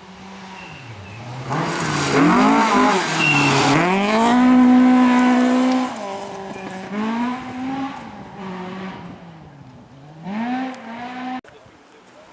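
A rally car passing at full throttle on a gravel stage: the engine revs climb and drop through several gear changes, loudest as it goes by, with the tyres throwing gravel. It then fades into the distance and revs up once more near the end before the sound cuts off suddenly.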